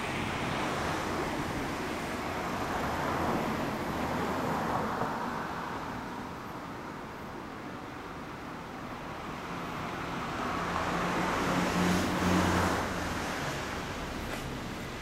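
Passing road traffic: vehicle noise swells and fades twice, once about four seconds in and again, louder and with an engine note, near the end.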